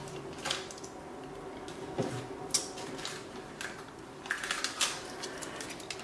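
Light, scattered clicks and taps of hands handling small objects and a sheet of paper nail forms, over a faint steady hum.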